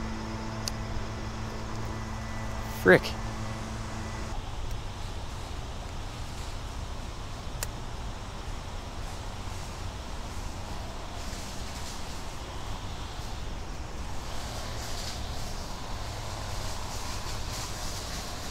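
A gas-powered string trimmer or edger running at a steady pitch in the background, then cutting off about four seconds in, over a low steady rumble.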